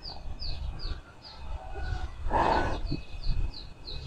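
A small bird calling: a steady string of short, high, falling chirps, about three a second. A soft breathy rush comes about halfway through.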